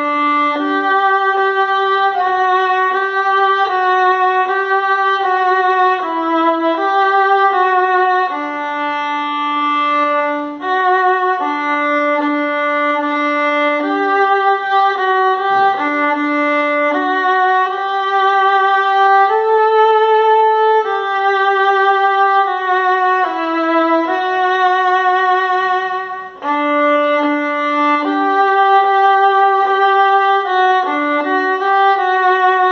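Solo violin bowing the alto line of a hymn at a moderate pace, without a metronome click: a single melody of held notes with light vibrato, with short breaks between phrases about ten and twenty-six seconds in.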